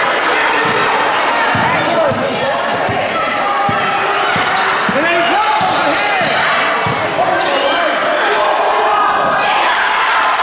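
Basketball game in a gymnasium: a basketball bouncing on the hardwood court amid a steady din of spectators' and players' voices, echoing in the hall.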